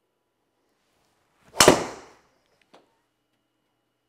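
A driver striking a golf ball off a tee, hit into an indoor simulator screen: one sharp, loud crack about one and a half seconds in that dies away over about half a second. A faint click follows about a second later.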